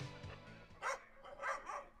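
A dog barking three short times, starting about a second in, while background music fades out.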